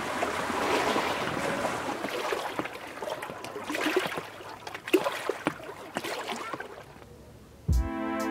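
Lake water washing and lapping against a pebble shore, a steady wash with scattered small splashes and clicks that fades out. Near the end, music with a drum beat starts.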